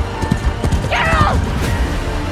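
Horses galloping, a run of quick hoofbeats, with a horse whinnying about a second in, over background music.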